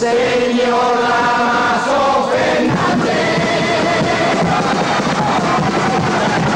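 A chirigota, a Cádiz-style carnival group of men, singing a song together in chorus, with a drum beating along.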